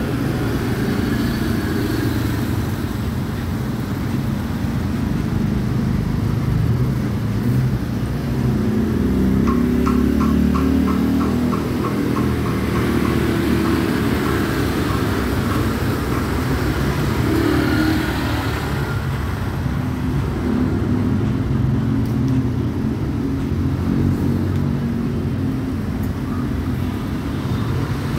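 Steady street traffic: cars and motorcycles running and passing close by, with a short run of quick, evenly spaced ticks about ten seconds in.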